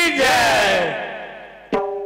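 A long, drawn-out vocal call through a PA slides down in pitch and fades away with echo. About a second and three-quarters in, tabla strokes and a steady held musical chord strike up.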